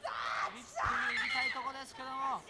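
High-pitched women's screams, twice, over a man's voice, during a submission hold in a women's pro wrestling match.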